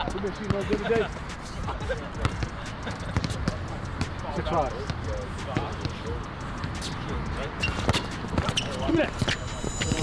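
Basketball bouncing repeatedly and irregularly on a hard court, with people talking in the background.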